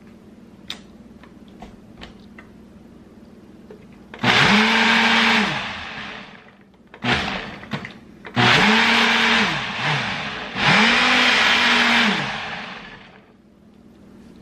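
Countertop blender run in four bursts, the second very brief, blending a smoothie of frozen fruit and ice. Each longer burst is loud: the motor spins up to a steady pitch, runs with the grinding of the contents, and winds down.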